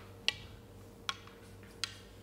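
Snooker balls clicking: three sharp, ringing clicks about three-quarters of a second apart, the first the loudest, over a steady low hum.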